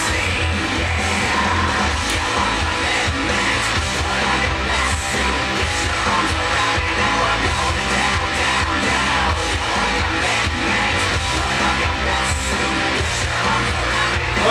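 Loud rock music with electric guitar and singing, playing steadily throughout.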